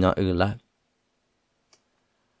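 A voice speaking for about half a second, then a pause with one faint click near the end.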